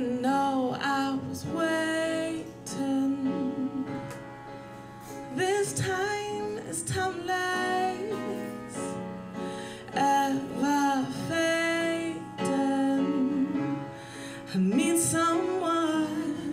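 A woman singing her original love song into a microphone over instrumental accompaniment. She sings phrases with long held notes and sliding runs, and the backing carries on through the short breaks between them.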